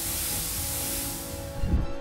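Hissing sound effect of smoke or gas spraying out over background music, fading near the end, with a short low thump just before the end.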